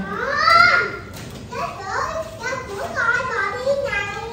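Speech only: people talking at a table, with a high, raised voice loudest about half a second in.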